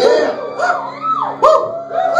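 A live band holding a steady chord under a run of short howling pitch glides, each one rising and then falling, about five or six in the two seconds.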